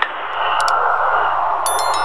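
Sound effects of an animated subscribe-button overlay: a short mouse click about two-thirds of a second in, then a bright, high bell-like chime near the end, over a steady hiss.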